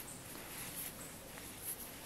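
Faint rustling with a few small ticks from a crochet hook drawing cotton twine through a double crochet stitch.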